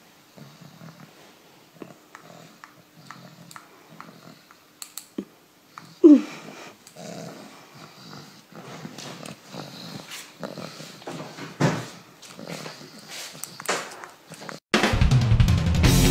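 A pug moving about on a blanket, with scattered small clicks and rustles and one short whine that falls in pitch about six seconds in. Near the end, loud rock music with drums and electric guitar cuts in suddenly.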